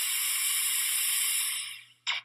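Analog TV static sound effect: a steady white-noise hiss that fades out near the end.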